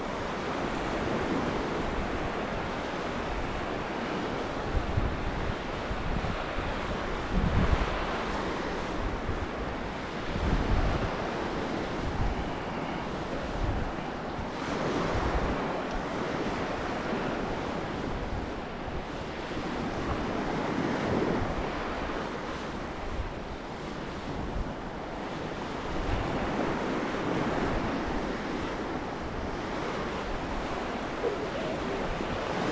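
Sea waves breaking and washing up a sandy beach, swelling and fading every few seconds, with wind gusting on the microphone in low rumbles.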